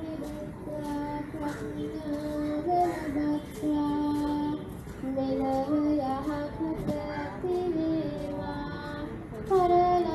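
A high voice singing a slow Buddhist devotional melody, holding long notes and sliding between pitches, with brief pauses between phrases.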